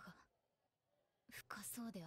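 Near silence, then faint speech starting about a second and a half in: a character's voice from the anime playing quietly.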